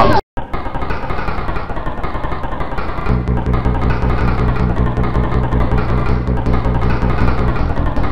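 YTPMV remix music built from rapid, stuttering chops of a sampled speaking voice, cutting out briefly at the start. A steady bass line comes in about three seconds in.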